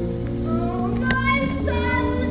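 A woman singing a slow, high vocal line over sustained theatre-orchestra accompaniment, in a live stage performance of a musical's ballad.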